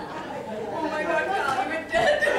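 Several people talking at once: crowd chatter among seated guests.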